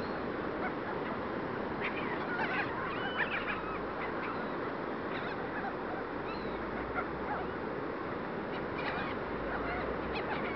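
A flock of seagulls calling, with a cluster of squawks about two to three and a half seconds in and another near the end, and scattered single calls between, over steady wind and surf noise.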